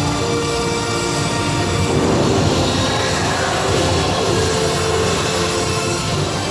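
Film soundtrack playing in a small theatre: held musical notes over a steady rumbling noise that swells slightly about two seconds in.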